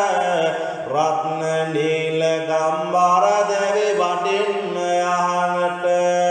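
A single voice chanting Sinhala kolmura verses (devotional kavi) in long, held, gliding notes over a steady low drone.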